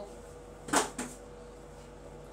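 A plastic marker tube thrown into a trash bin: a short clatter about three-quarters of a second in, then a lighter knock just after.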